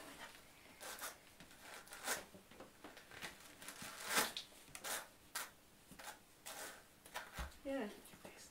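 Hand carders being drawn across each other close to the microphone, carding nettle fibre: a series of irregular, scratchy brushing strokes as the wire teeth pull through the fibre.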